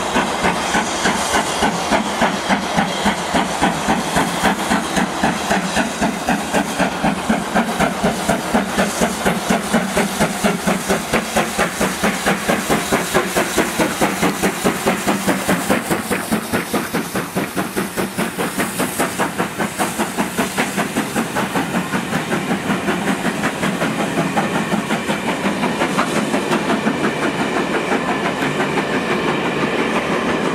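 Steam locomotive 70000 Britannia, a two-cylinder BR Standard Class 7 Pacific, working hard at low speed up a gradient: loud, evenly spaced exhaust beats with a hiss of steam. About halfway through the engine passes and the beats grow softer as the coaches roll by.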